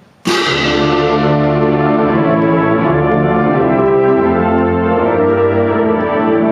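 Full wind band comes in together with a loud entrance about a quarter second in, then plays on through held chords, brass to the fore.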